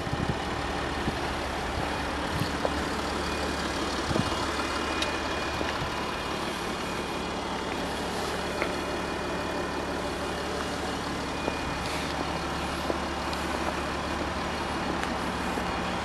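An engine idling steadily: a low, even hum that holds the same pitch throughout, with a few faint clicks.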